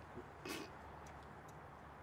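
Quiet outdoor background with a faint, steady low hum. One brief faint noise comes about half a second in, followed by a few faint ticks.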